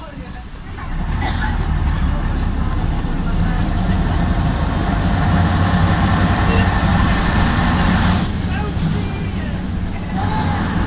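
Leyland PD2 double-decker bus engine running under load, heard inside the upper deck with the body's rattle and road noise; it pulls harder about a second in, with one sharp knock just after, eases off a little past eight seconds and picks up again at the end.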